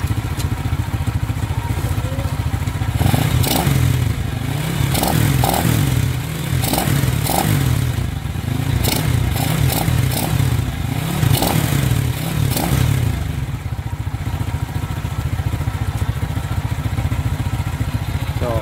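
Honda XRM 110 motorcycle's single-cylinder four-stroke engine, bored up to 52 mm, running on its stand: it idles, is blipped on the throttle about eight times in quick succession, then settles back to idle for the last few seconds. The engine sounds louder since the bore-up.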